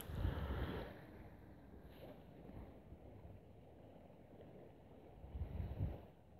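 Faint low rumble of wind on a clip-on microphone beside a flowing river, a little louder in the first second and again briefly near the end.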